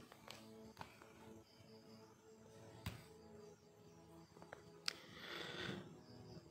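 Very quiet: faint background music, with a few sharp small clicks from a potentiometer and its wires being handled, and a short rustle near the end.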